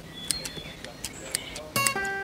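Bonsai scissors snipping leaves and shoots off a Japanese maple: a handful of light, sharp clicks spread through the two seconds.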